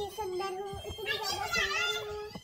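A young girl's voice, with a wavering sing-song burst about halfway through, over a steady held tone.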